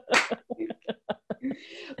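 A woman laughing: one sharp burst of laughter, then a quickly fading run of short 'ha-ha' pulses, ending in a breathy exhale.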